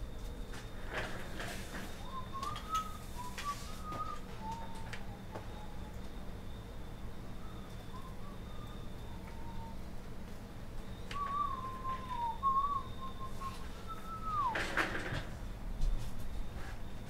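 A person whistling softly to himself, a wandering tune in short phrases that ends with a falling slide near the end. A few brief crinkles and clicks of foil packs being handled come at the start and again near the end, over a faint steady high whine.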